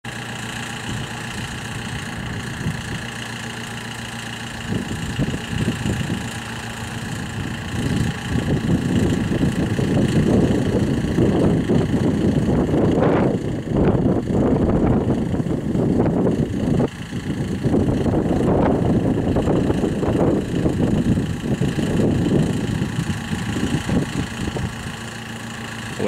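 Twin General Electric F404 jet engines of a McDonnell Douglas F-18 Hornet running at ground idle: a steady high whine over an uneven low rumble that grows louder about eight seconds in.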